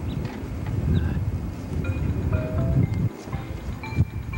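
Small electronic keyboard playing a few short, separate notes over a low rumble of wind on the microphone.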